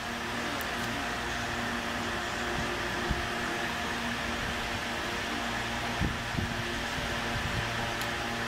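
A steady mechanical hum from a running motor, even in level, with a few faint steady tones in it. A few soft knocks from the pipe being handled close to the microphone.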